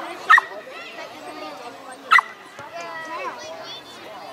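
A dog barking twice, two short sharp barks about two seconds apart, over voices calling out across the field.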